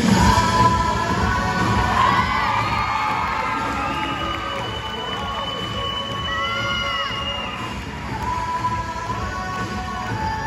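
Crowd cheering and shrieking, with high screams that rise and fall and one long held scream in the middle.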